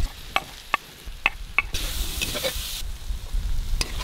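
A metal ladle stirring food frying in a kadai: a few sharp clinks of the ladle against the pan, with a stretch of sizzling a little past the middle.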